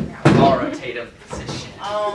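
A sharp thump about a quarter second in, with a softer one just before, amid indistinct voices.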